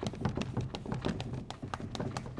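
Chalk writing on a blackboard: a quick, uneven run of short taps and scrapes as the letters are stroked on.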